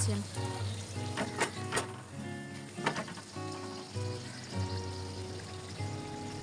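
A luchi deep-frying in hot oil in a small kadai, with a steady sizzle. A few sharp clicks, the steel ladle touching the pan, come between about one and three seconds in.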